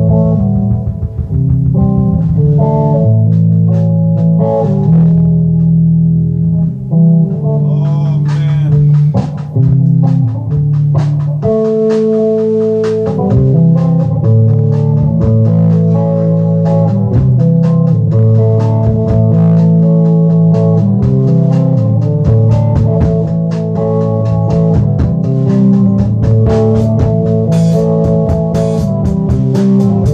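An electric plucked string instrument played through an amplifier, its vibration picked up from the neck. It plays a continuous run of sustained low notes and chords.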